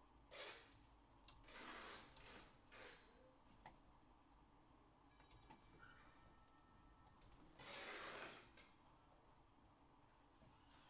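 Near silence: room tone, broken by a few short, soft rushes of noise, the longest about eight seconds in.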